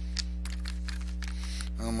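Steady electrical hum under a few light clicks of small nail-polish bottles being handled, and a voice begins near the end.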